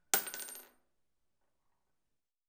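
Glass-shattering sound effect: a sharp crash with ringing, tinkling shards that die away within the first second.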